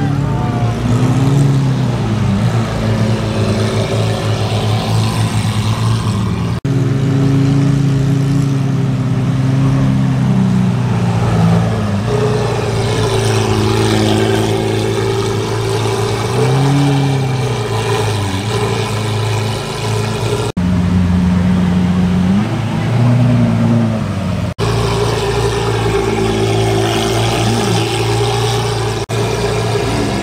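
Lamborghini Aventador SV's 6.5-litre V12 idling loudly, with a few short revs that rise and fall back to idle.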